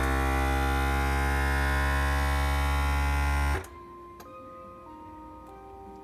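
FoodSaver V4440 vacuum sealer's pump motor running with a steady hum as it draws the air out of the bag around a pork loin. It cuts off suddenly about three and a half seconds in, once the bag is evacuated.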